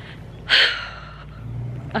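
A quick, loud intake of breath close to the microphone about half a second in, a short hiss.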